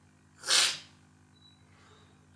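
A person sneezing once: a single short, sharp burst of breath about half a second in.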